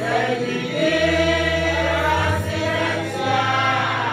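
A group of voices singing a song together over low held bass notes that change pitch a few times.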